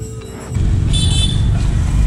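Road traffic passing close by, a loud low noise that sets in about half a second in, with a short high horn toot about a second in.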